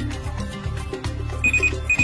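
Background music with a steady beat. Near the end come two short, high electronic beeps about half a second apart.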